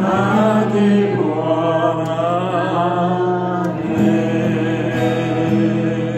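A Catholic hymn sung by a voice with vibrato over a steady instrumental accompaniment whose low notes change every second or so.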